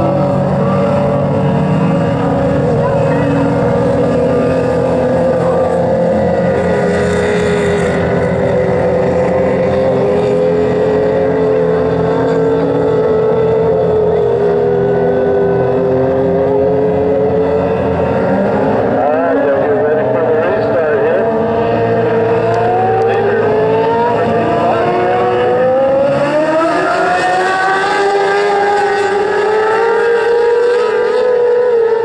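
A pack of winged micro sprint cars racing on a dirt oval. Several engine notes overlap at high revs, their pitch sagging and then climbing again, with sharp rises in pitch past the middle and near the end.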